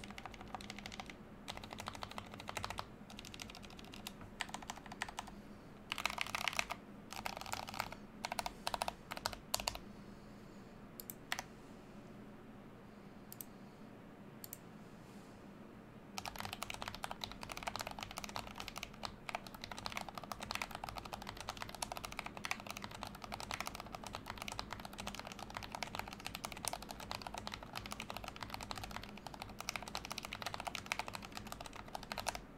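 Mechanical keyboard with custom cast resin keycaps being typed on: scattered keystrokes and short bursts for the first ten seconds, then a near pause with a few single clicks, then fast continuous typing from about sixteen seconds in.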